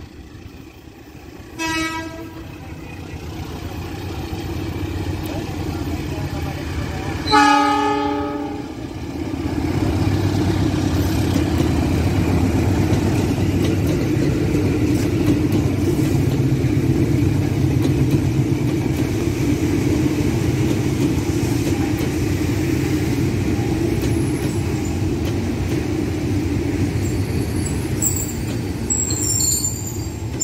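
JR 205 series electric commuter train sounding its horn twice, a short blast about two seconds in and a longer, louder one around seven seconds, then passing close by with a steady rumble of wheels on rail that builds and holds.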